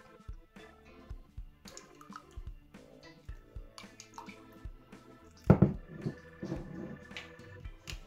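Background music over small drips and splashes of water tipped from a plastic spoon into a bowl of flour, with one sharper knock about five and a half seconds in.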